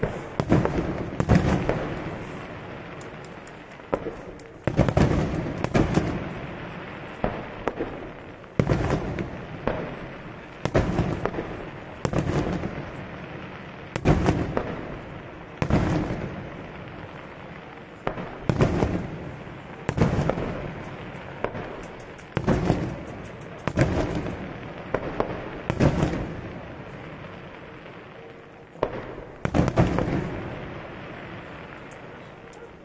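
Daytime aerial fireworks: shells bursting in a steady series of loud bangs, about one every one to two seconds, each followed by a long rolling echo off the surrounding hills.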